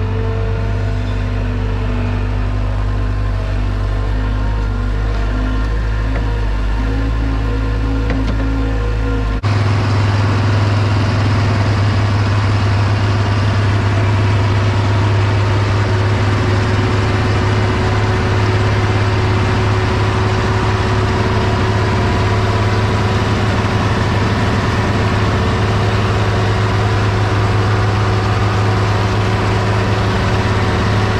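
Engines running steadily while a skid steer loads manure into a spreader; about nine seconds in it cuts to the International 1256 tractor's six-cylinder diesel running steadily as it pulls a flail tank manure spreader, a lower, louder steady hum.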